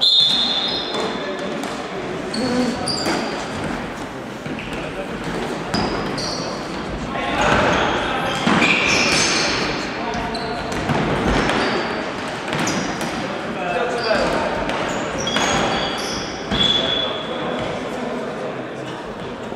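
Floorball game in a reverberant sports hall: a short referee's whistle at the face-off, then players shouting and sharp knocks of plastic sticks and ball on the wooden floor, with brief whistle-like tones again near the end.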